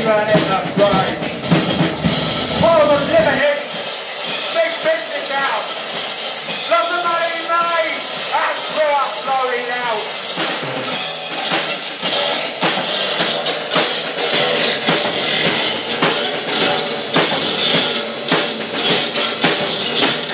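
Live rock band: the full band sound ends about three seconds in and the deep bass drops out, a voice follows, and from about eleven seconds the drum kit plays alone with busy cymbals and hi-hat, leading into the next song.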